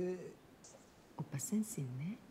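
Quiet, whispery speech in two short phrases, one at the start and one in the second half: soft-spoken dialogue from the episode playing in the background.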